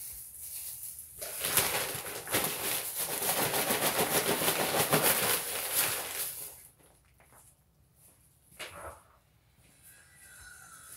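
Plastic bag and a plastic scoop rustling and crinkling as old, damp soil is scooped out. Dense crackling for about five seconds, then a short rustle near the end.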